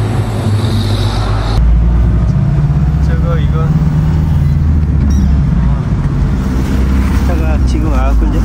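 Roadside traffic with a truck going by, then, after a cut about a second and a half in, the steady low drone of an old van's engine and road noise heard from inside its cab while it is driven.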